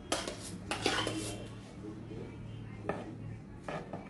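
A spatula scraping and knocking inside a stainless steel pot of whipped cream, in two bursts in the first second and a half. Then two short metallic clicks near the end.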